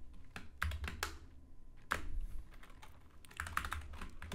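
Typing on a computer keyboard: irregular key clicks, pausing briefly in the middle, then a quicker run of strokes near the end.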